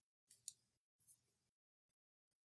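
Near silence broken by a few faint, short clicks in the first second or so.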